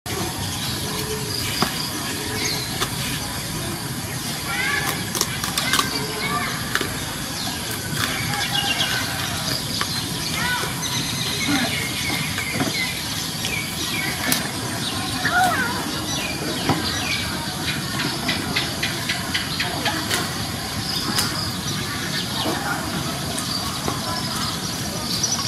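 A steady background hiss with many short, high chirps scattered throughout and light, sharp clicks while a kitten eats from a china plate.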